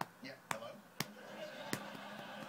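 A hand lightly tapping a Bengal cat's rump: four sharp pats, roughly one every half second.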